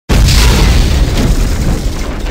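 A loud, deep boom sound effect that starts abruptly and slowly dies away into a noisy rumble.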